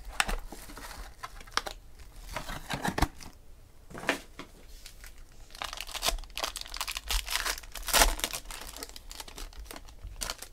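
Plastic wrapping being torn and crumpled in the hands as a trading-card box is opened, crinkling in irregular bursts that are loudest about eight seconds in.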